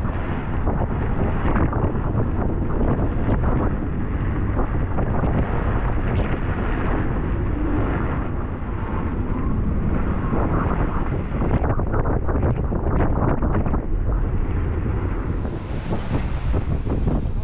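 Strong wind buffeting the microphone, over the rush of a rough, breaking sea against a sailing yacht. It is a steady, heavy low rumble with frequent short gusty flurries.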